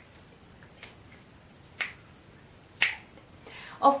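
Finger snaps, three of them evenly spaced about a second apart, keeping a slow beat.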